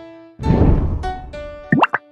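Cartoon sound effects in an animated children's video: a single plucked note, then about half a second in a loud swoosh with bright notes that fades away, and near the end two quick rising whistle-like swoops.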